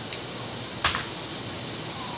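A single sharp click a little under a second in, over a steady background hiss.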